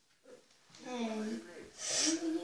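A person's voice: near silence at first, then a short wordless vocal sound about a second in, and a breathy hiss near the end.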